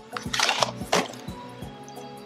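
Background music with steady held notes, with a few short rustles in the first second as perfume packaging is handled.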